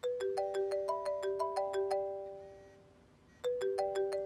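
Mobile phone ringtone: a short chiming melody of quick notes that plays, fades out, and starts over about three and a half seconds in. It signals an incoming call.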